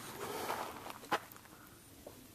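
Rustling from the handheld camera being moved, with one sharp click just after a second in, then quiet outdoor background.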